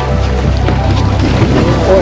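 Steady low hum of a small boat's motor with wind on the microphone, under the fading end of background music; voices start near the end.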